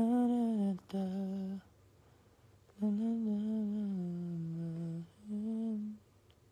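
A man humming a slow tune in held notes, in four phrases with short breaks between them. The longest phrase, in the middle, steps down in pitch.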